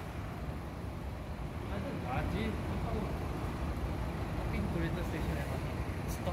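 Steady low rumble of road traffic and buses, with faint voices talking now and then in the background.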